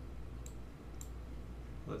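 Two short computer mouse clicks about half a second apart, over a low steady hum.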